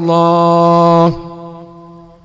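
A man's voice through a PA system, holding one long chanted note for about a second, then a long echo that dies away slowly.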